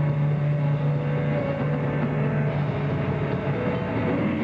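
Live metal band playing loud: a low, heavily distorted note held for about two and a half seconds over a dense wall of guitar and drums, which carries on after the note ends.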